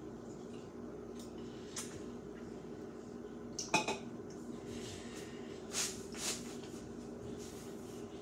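Dishes and utensils clinking and knocking now and then as they are handled and rummaged through on a kitchen counter, a few separate clinks over a steady low hum.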